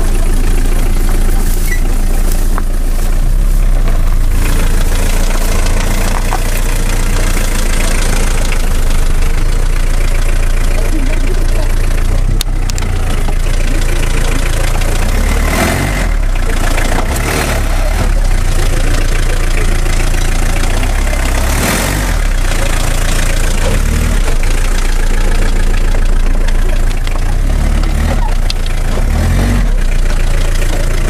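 A vehicle engine running, heard from inside the cabin as a steady low rumble.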